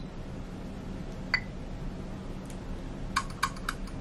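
Short computer click sounds from the Smyle Mouse software's audio feedback: one brief beep about a second in, then a quick run of four or five clicks near the end as a smile registers as a mouse click. A low, steady room hum runs underneath.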